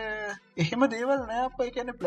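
Speech only: a man talking, with a short pause about half a second in.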